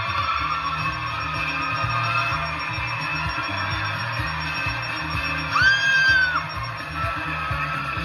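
Upbeat game-show music playing under a studio audience cheering and yelling, with one loud, high, held scream about five and a half seconds in.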